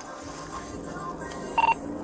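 Low steady hum inside a police patrol car, broken about one and a half seconds in by a single short electronic beep.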